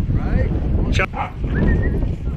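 Wind buffeting the microphone, with a dog whining and yipping in short high calls, and a single sharp smack about a second in.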